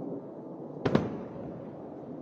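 A single sharp explosion bang about a second in, from an air strike on the city, over a steady background hiss.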